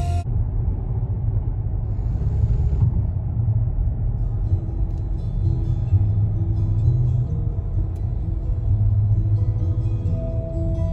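Steady low road rumble inside a moving car's cabin, with soft music of long held notes over it.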